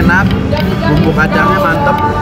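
A man's voice over background music.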